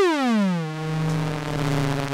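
Eurorack modular synthesizer tone whose envelope is reshaped by a Klavis Flexshaper: the pitch glides down as the envelope falls, then settles, under a second in, into a steady held buzzy tone as the oscillator modulation takes over.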